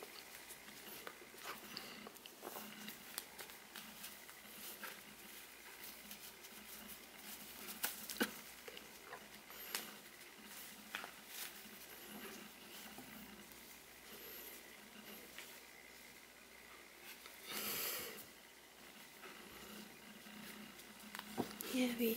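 Faint rustling and scattered light clicks of hands handling a crocheted doll and working a crochet hook through cotton yarn, with one brief louder rustle near the end.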